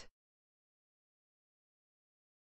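Near silence: dead digital silence, after the last trace of a spoken word cuts off at the very start.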